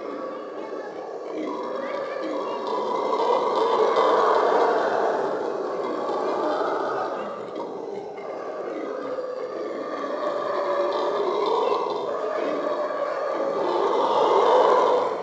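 Monkeys screaming in a loud, continuous chorus that swells and fades several times.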